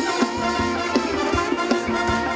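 Live band playing Thai ramwong dance music, with sustained notes and a steady drum beat about every three-quarters of a second.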